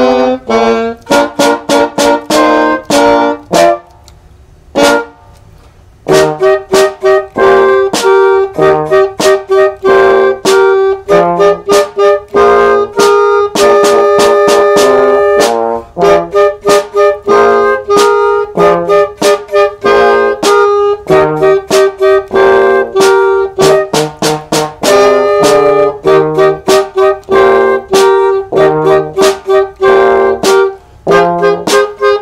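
Small band of flute, saxophone, trombone and drums playing an up-tempo tune in short, detached notes. The music drops out about four seconds in and all parts come back in together at six seconds.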